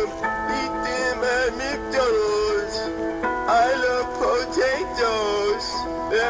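Music: a voice singing a comic novelty song over steady held chords.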